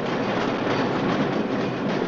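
Cable car running along its street track: a steady, even running noise with no break.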